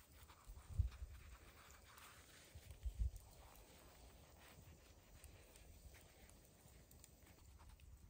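Knife slicing through a bread bun, quiet, with two soft low thuds about one and three seconds in.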